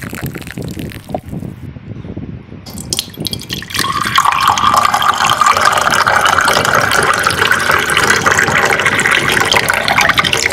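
Water running in a steady, loud stream, like water filling a vessel, starting about four seconds in and stopping just after the end. Before it there are softer liquid sounds.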